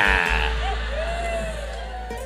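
Laughter from the preacher and the audience through the PA system: a high, wavering burst at the start that fades away over the two seconds, over a steady mains hum.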